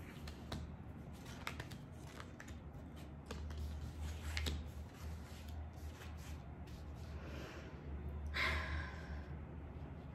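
Tarot cards being handled and laid out on a table: faint, scattered clicks and slides of card, with a brief louder rustle near the end.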